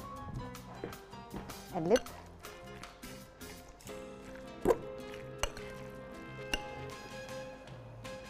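Background music with a few sharp clinks of a spoon against a glass mixing bowl as a soft cheese filling is stirred.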